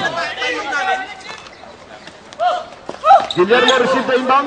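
Men's voices calling out during play, with a few sharp knocks of a basketball bouncing on a hard outdoor court a little under three seconds in.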